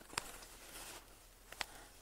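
A quiet pause with faint background hiss and two faint short clicks, about a fifth of a second in and again near the end.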